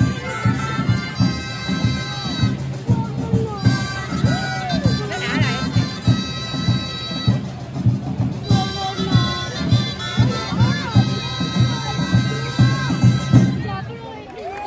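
A street band of drums and loud reed pipes playing a festival tune, the drums keeping a steady beat. The pipes break off twice for about a second while the drums carry on.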